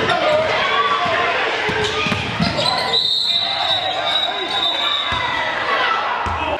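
Basketball game sound in an echoing gym: voices calling out over each other and a ball bouncing on the hardwood floor. A high, steady tone comes in about halfway through and holds for a couple of seconds.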